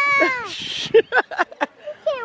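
A long, high-pitched, meow-like vocal call that drops in pitch as it ends about half a second in, followed by a short hiss and several brief squeaky vocal sounds.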